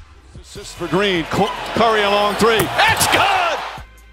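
Live basketball game sound: an arena crowd's noise swells, with a basketball bouncing on the hardwood court and shouting voices over it. The sound cuts off suddenly near the end.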